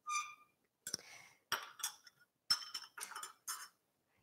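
Metal spoon clinking against a saucepan and a glass bowl. One clear ringing clink comes at the start, followed by a scatter of lighter clinks and taps.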